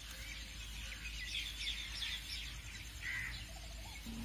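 Faint birds chirping in a background ambience bed: scattered short, high chirps over a low steady hum.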